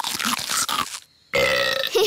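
Cartoon snail munching vegetables with crunchy chewing sounds, then, after a short pause, a long loud burp from the well-fed snail.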